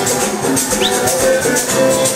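Music from a plucked-string ensemble, with guitars over maracas shaking a steady, even rhythm.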